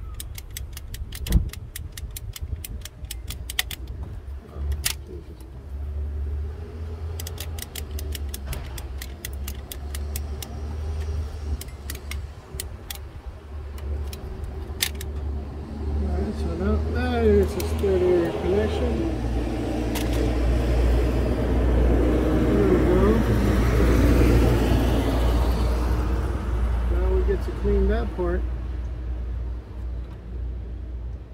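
A ratchet wrench clicking in quick bursts while he works on fasteners in the engine bay. In the second half a low, steady rumble grows louder and then eases.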